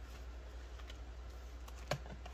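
Light plastic clicks and rustles from hands handling a clear zip cash pouch in a ring binder, with one sharper click near the end, over a steady low hum.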